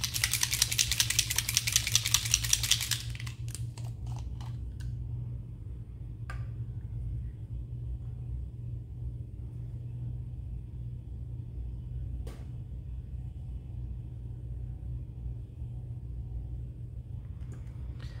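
A small bottle of alcohol ink being shaken hard for about three seconds: a fast, even rattling. After that, a steady low hum with a couple of light taps.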